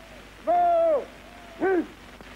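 A voice calling out two drawn-out shouted syllables: one held for about half a second that drops in pitch at its end, then a shorter rising-and-falling call near the end.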